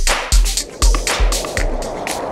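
Background electronic music with a steady kick-drum beat, about two beats a second, and bright hi-hat ticks; near the end the beat stops and a steady rushing noise comes in.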